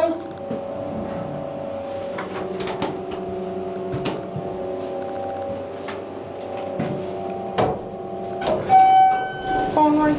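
Schindler elevator car in motion with a steady hum and a few light clicks. About a second before the end a single electronic chime sounds for about a second as the car reaches its floor.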